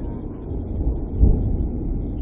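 A low rumble with no melody or vocals, closing out a slowed and reverbed hip-hop track. It swells louder about a second in.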